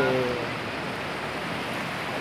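A fast, shallow river rushing over rocks and rapids, a steady even rush of water. A voice trails off in the first half second.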